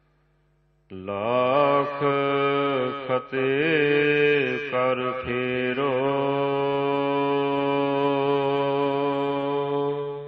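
A voice singing a Gurbani shabad in long held notes that bend slowly up and down, over a steady low drone. It starts about a second in after a short silence.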